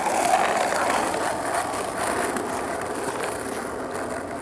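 Skateboard wheels rolling over asphalt: a steady rolling noise that slowly fades.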